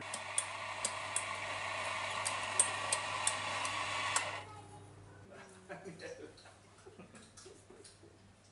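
Electric coffee grinder running steadily for about four seconds, with scattered sharp clicks over it, then cutting off suddenly.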